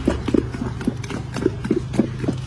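Quick knocks, about four or five a second, of a spoon against a large steel bowl as matar masala is mixed fast by hand, with a steady low hum underneath.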